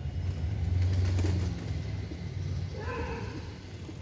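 A low rumble, loudest about a second in and then easing off, with a short pigeon coo near the end.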